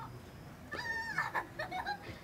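A child's high-pitched shout, held for about half a second starting just under a second in, followed by a few shorter calls.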